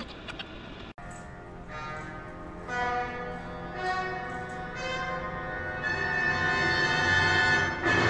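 Orchestral film-score music: sustained chords enter in layers from about two seconds in and swell toward the end, with a bell-like ring. A brief dropout about a second in.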